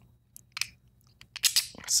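Small plastic clicks and rustling as 3D-printed plastic airbrush mask pieces are handled: a couple of single taps in the first half, then a quick cluster of clacks near the end.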